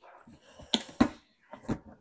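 Hard plastic knocking and clicking as the lid and side panels of a collapsible plastic storage box are pushed and worked into place, with a few sharp knocks about a second in.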